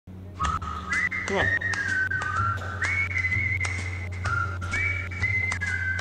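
A whistled tune in background music: a single clear whistle line that slides up into each note and steps between held notes, over a steady low bass and light percussion.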